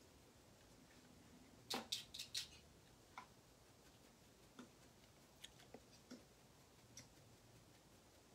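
Near-silent room with a few sharp clicks from working a laptop: a quick run of four about two seconds in, then scattered faint ticks.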